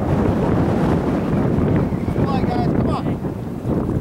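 Wind buffeting the camera microphone, a steady loud rumble, with a few distant voices calling out over it around two to three seconds in.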